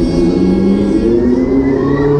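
Loud fairground ride music playing over the ride's sound system: held low synth notes that step in pitch, with a higher gliding tone in the second half.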